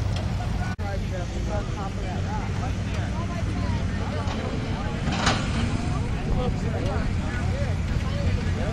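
Jeep engines running at low revs as Jeeps crawl over an off-road obstacle course, a steady low rumble under the chatter of many voices.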